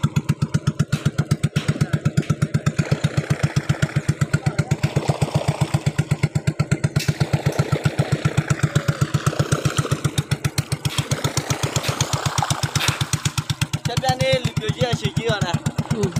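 Engine of a wooden longboat running steadily under way, with a rapid, even chug.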